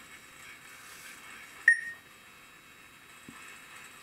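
A single short electronic beep from the homemade T-800 robot's voice-control system, about a second and a half in: one clear tone that fades quickly. It signals that the spoken command has been taken. Faint room noise otherwise.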